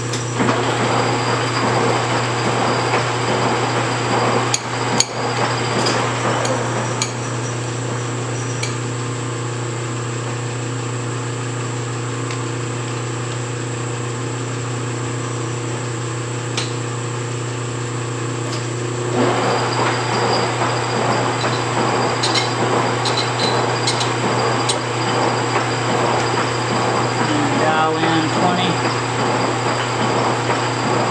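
Metal lathe running with a steady motor hum while a carbide tool takes a twenty-thousandths facing cut across a spinning cast iron workpiece. It is a big interrupted cut, so the tool knocks and chatters as it meets each solid section. The cutting noise eases off for a while, then comes back louder and rougher with many sharp ticks about two-thirds of the way through.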